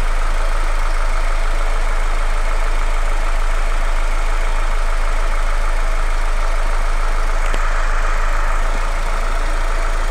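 Car petrol engine idling steadily with an even, unchanging hum.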